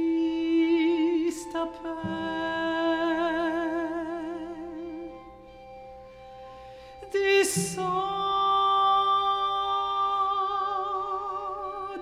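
Mezzo-soprano and string quartet: a held note with vibrato over sustained strings, a low string note entering about two seconds in. The music thins and quiets in the middle, then a short breathy hiss and a fresh held note with vibrato come in about seven seconds in.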